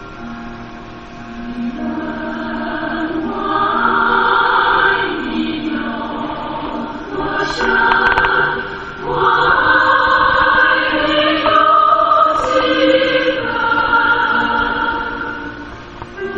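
Music: a choir singing a slow song in long held phrases over instrumental backing.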